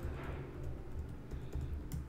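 Faint, irregular keystrokes on a computer keyboard as a word is deleted and retyped.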